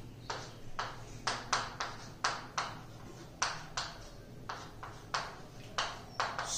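Chalk writing on a chalkboard: a quick, uneven run of short sharp taps and scrapes as each letter is stroked, about three a second.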